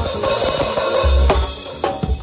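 Drum kit played live with a forró band: a long ringing wash over the first second or so, then sharp snare and bass-drum hits near the end, over the band's steady pitched parts.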